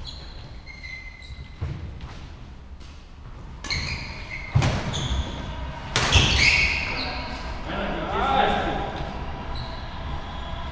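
Badminton rally on a wooden indoor court: sharp racket strikes on the shuttlecock and footfalls, with short high squeaks from court shoes, echoing in a large hall. The loudest hit comes about six seconds in, followed by players' voices calling out.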